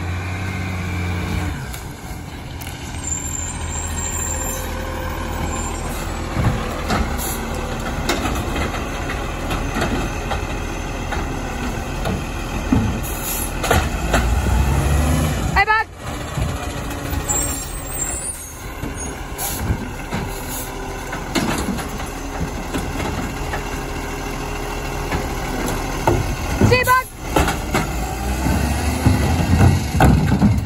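Side-loader garbage truck's diesel engine running as it stops and starts along the kerb collecting wheelie bins, with its hydraulic lifting arm working. Sharp hisses, typical of air brakes, come about halfway through and again near the end.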